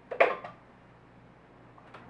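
A short, sharp clank of a metal condensed-milk can being handled at a glass blender jar, then a faint click near the end.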